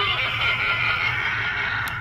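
Talking Halloween door-knocker prop playing a drawn-out recorded sound effect without words, high and fairly steady, over a steady low hum.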